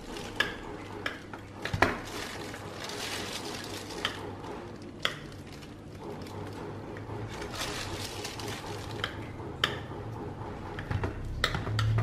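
Kitchen knife cutting a pan-fried sticky rice cake (bánh tét) on a glass plate: scattered clicks and taps of the blade against the glass, over a low steady hum.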